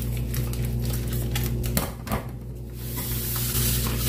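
Crinkling of a plastic bag of salt being handled, a quick run of small clicks, then a hiss from about three seconds in as salt starts pouring into a dry wok. A steady low hum runs underneath.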